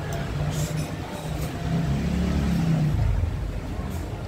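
Street traffic: a motor vehicle's engine rumbles past, swelling and falling away in the middle. Two soft, brief slurps of noodles come in the first second and a half.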